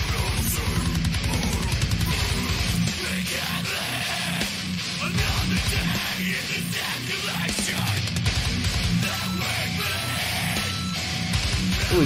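Beatdown deathcore song playing: heavy electric guitar and drums. About nine seconds in, three short high beeps sound over the music, like a sample of a dump truck backing up.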